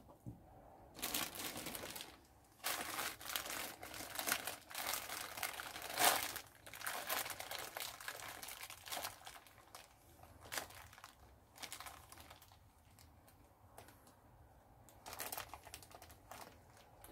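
Plastic zip bags of fibre crinkling and rustling as they are opened and handled, in irregular bursts that are busiest through the first ten seconds and pick up again near the end.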